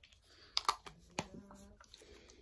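A few faint clicks and taps as a small plastic spray bottle is handled.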